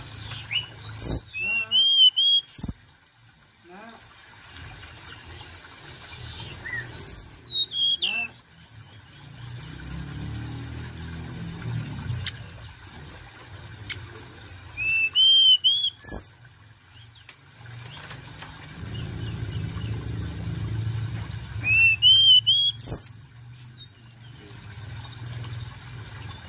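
Hill blue flycatcher singing: four short, bright phrases of quick whistled notes, some sweeping upward, spaced roughly seven seconds apart. A low rumble runs underneath.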